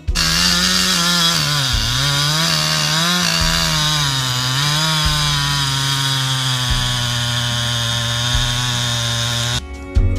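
Chainsaw running at high speed, its pitch dipping and recovering several times as it cuts into a log, then running steady. It cuts off suddenly just before the end.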